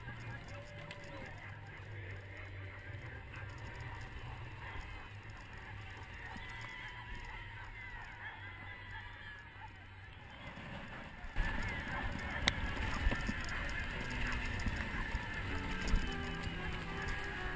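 Many sled dogs yelping and barking together in a mass of teams, in many short rising and falling cries. About eleven seconds in, a louder low rumbling noise joins them.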